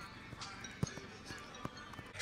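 Outdoor football-field ambience with faint distant voices and a few sharp thumps. The loudest thump comes just under a second in.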